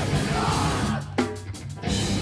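Live heavy band music played loud: distorted electric guitar and drum kit. The band drops out briefly in the second half and comes back in just before the end.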